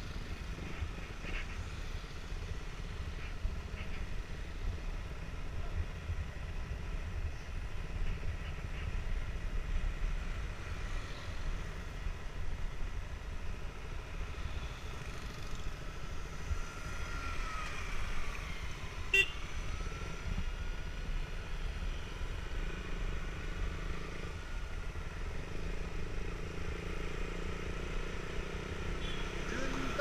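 A motorcycle ridden along a road, heard from a camera held close to the riders: a steady low rumble of engine and wind on the microphone. About halfway through, a tone rises and falls over several seconds, with a sharp tick in the middle of it.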